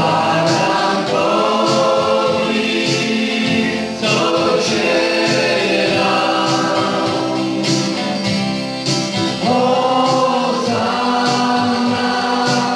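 Polish worship song: voices singing long held phrases over instrumental backing with a steady beat.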